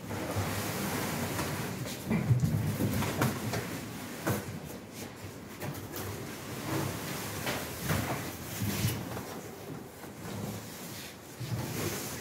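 Large cardboard shipping box being pulled up and off a packaged stove: cardboard scraping and rustling, with several dull knocks along the way.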